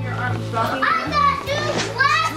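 Children's high-pitched voices calling out and squealing at play, with music playing underneath.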